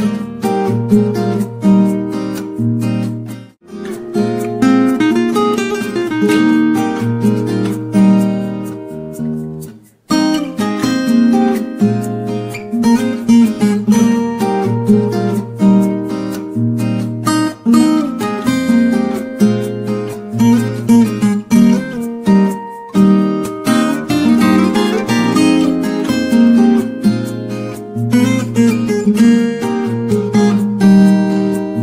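Background music: an acoustic guitar piece, strummed and plucked, with two brief breaks in the playing early on and about a third of the way through.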